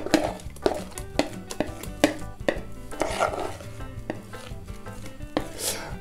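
Irregular clicks and knocks as thick cake batter is scraped out of a mixing bowl into the metal inner pot of a Redmond RMC-M40S multicooker.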